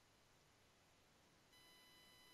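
Near silence on the line, with a very faint steady tone coming in about one and a half seconds in.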